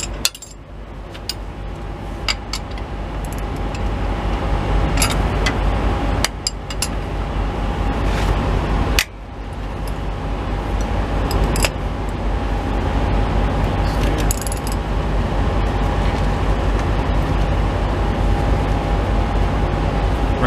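Hand wrench and socket clinking against the alternator bracket and bolts of a CAT C15 diesel as the bolts are loosened: scattered sharp metal clicks, two of them loud, right at the start and about nine seconds in. Under them runs a steady low hum like a vehicle idling.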